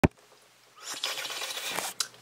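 A short click, then about a second of steady, breathy hiss: air blown out through pursed lips.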